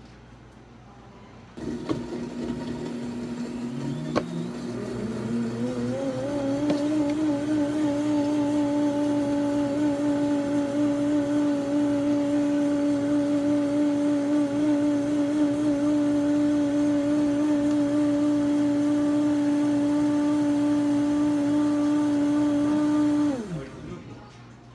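Electric blender motor switching on about two seconds in, its pitch climbing for a few seconds as it comes up to speed. It then runs at a steady high speed and switches off near the end, its pitch dropping as it winds down.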